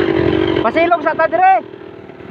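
A small vehicle's engine running at a steady pitch, with a person's voice calling out briefly in the middle, after which it is quieter.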